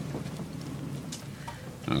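Low, even background room noise with a few faint ticks; a voice begins right at the end.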